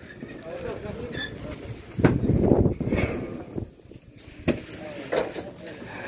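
Indistinct voices of people talking nearby, loudest about two to three seconds in, with a sharp knock about four and a half seconds in.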